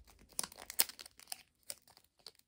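Thin clear plastic photocard binder sleeves crinkling as a card is worked into a pocket, a run of irregular crackles that is busiest in the first second and thins out after.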